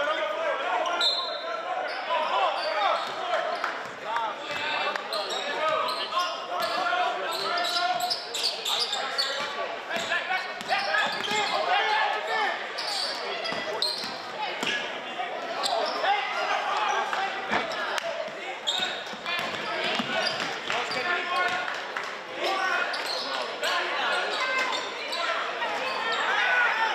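A basketball bouncing on a hardwood gym floor during play, mixed with indistinct voices of players and spectators echoing through a large gym.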